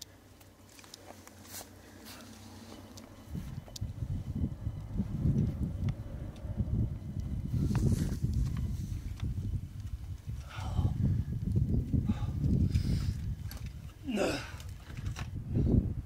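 Gusty wind buffeting the microphone in uneven low rumbles, starting about three seconds in. A climber's short effort grunts come through twice, in the second half.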